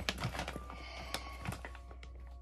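Plastic packaging crinkling, a scatter of irregular small clicks and crackles, as a costume bag is handled.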